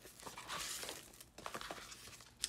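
Clear plastic sleeve crinkling as a sheet of clear stamps is slid out of it: a soft rustle for about the first second, then a few light clicks.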